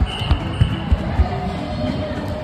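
Footsteps thudding on a hard floor, about three a second, a toddler running, with faint background music and voices underneath.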